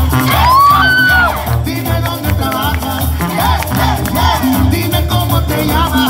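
Loud dance song played by a DJ, with singing over a steady, repeating beat.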